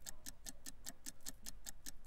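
Countdown-clock ticking sound effect: rapid, even ticks, several a second, marking a thirty-second countdown.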